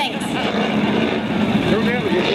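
1985 Chevy pickup's 350 small-block V8 running under load as the truck drives up a dirt off-road course, with voices over it near the end.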